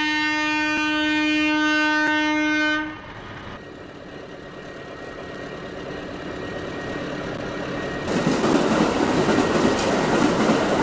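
Train horn holding one steady note for about three seconds, then the noise of a train running on the rails building up, louder from about eight seconds in.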